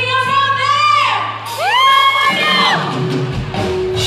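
Live rock band with a female lead singer, amplified through a PA in a large hall. She sings held and sliding notes over a lighter backing, and the drums and bass come in fully near the end.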